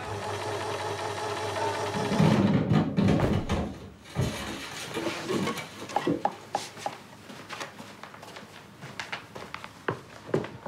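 Electric domestic sewing machine stitching in one burst of about two seconds, the loudest thing heard. Scattered light clicks and knocks of handling follow.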